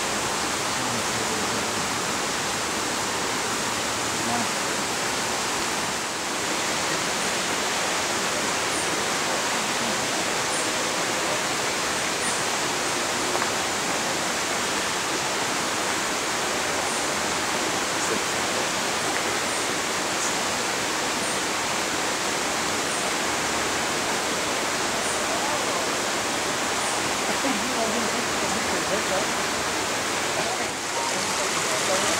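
Steady rushing noise of running water, even and unbroken, with faint high chirps every couple of seconds.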